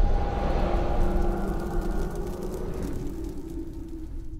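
Cinematic trailer sound design: a deep rumble that fades slowly over a few seconds, with a few held tones ringing above it.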